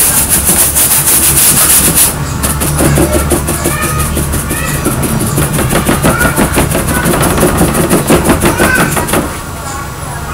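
Stiff paintbrush scrubbing and dabbing thick paint onto a flat board in rapid, even strokes, building a textured background. The strokes are bright and hissy for the first couple of seconds, then duller, and stop about nine seconds in.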